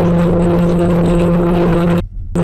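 A car horn sounding one long, steady, unwavering blast that cuts off near the end.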